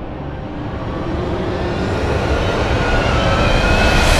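A rising whoosh sound effect, a swelling riser that grows steadily louder and climbs slightly in pitch.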